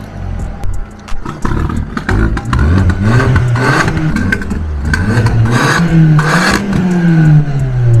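Audi TT 8N's 1.8-litre turbocharged four-cylinder engine being revved, its pitch rising and falling several times, with bursts of hiss between revs.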